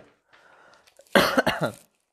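A man coughing: a short harsh double cough about a second in.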